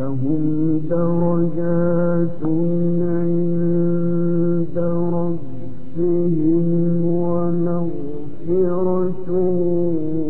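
A man reciting the Quran in the melodic mujawwad style, the phrase beginning right at the start and drawn out in long, held, ornamented notes, with short breaks between phrases.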